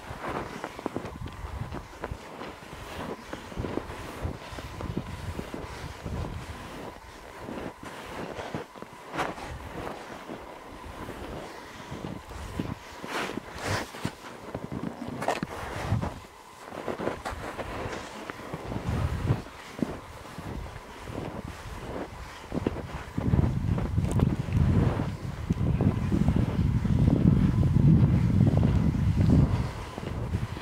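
Cross-country skis sliding and scraping on snow, with pole plants and the jolts of each stride, under steady wind noise on the microphone. The wind buffeting grows into a heavy low rumble over the last seven seconds or so.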